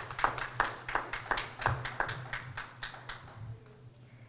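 Applause from a small audience: distinct hand claps, a few per second, that thin out and stop about three seconds in.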